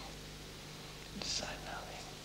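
Pause in a conversation with a steady low hum, broken a little over a second in by one brief, soft, breathy voice sound, like a whisper or a breath.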